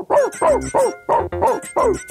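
A quick run of about six short, yelping dog-like yips, each rising and falling in pitch, over a bouncy children's-music backing track on a 1980s talking-toy story cassette.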